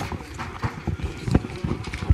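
A string of irregular thumps and knocks, about half a dozen in two seconds, from people moving about at the front of a lecture hall.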